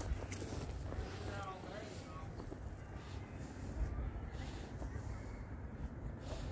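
Faint distant voices over a steady low rumble.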